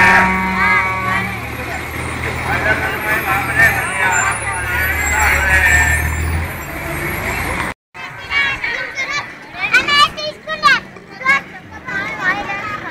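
A crowd outdoors, many people talking at once over a steady low engine hum, which stops a little past six seconds in. After a cut near the end, a busier mix of voices follows, some of them high-pitched.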